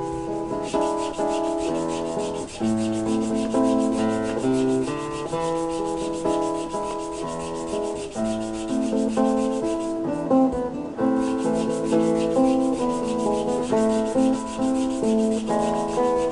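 Hand sanding of a small handmade wooden kazoo body, quick rubbing strokes going on steadily. A background music track of plucked and keyboard notes plays under it.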